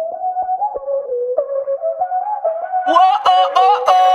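Music: a song's intro with a lead melody that bends up and down over short percussive clicks, and a fuller, brighter sound coming in about three seconds in.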